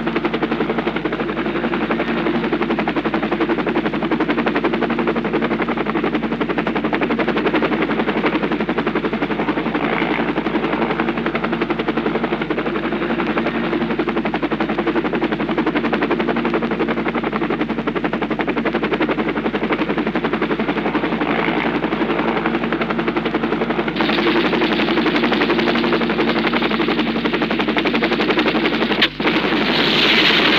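Helicopter rotor and engine running steadily, a fast, even chopping over a low drone, with a brief break near the end.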